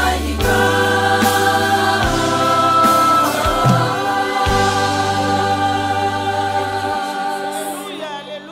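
Women's gospel choir singing sustained harmonies over band accompaniment with a low bass line. The bass drops out about a second before the end and the music starts to fade.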